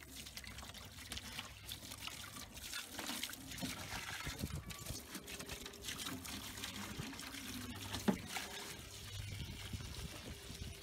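A garden hose's spray nozzle runs a thin stream of water that trickles and splashes as it rinses wet, chopped, leached acorns out of a plastic tub onto a wire-mesh crate. There is a single sharp knock about eight seconds in.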